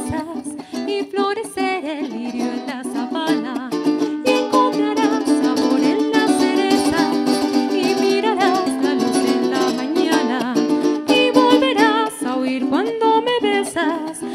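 Venezuelan cuatro played alone in rapid chords: the instrumental interlude of a Venezuelan pasaje, between sung verses.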